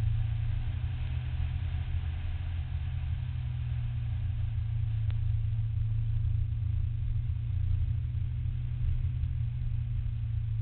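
Nissan Silvia S13's engine and road noise heard from inside the car as it drives an autocross course, a steady low drone with little change in pitch.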